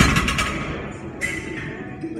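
A loaded barbell's bar and iron plates rattle and ring out after being set down hard on the rubber gym floor, dying away within about half a second. A smaller knock or clink follows just past halfway.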